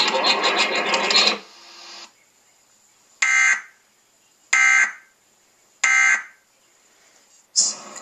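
Emergency Alert System end-of-message data tones heard from a TV: three short, identical bursts of digital tone about a second and a quarter apart, marking the end of the test broadcast. Before them, the test's audio, a loud mix of voice and music, cuts off about a second and a half in.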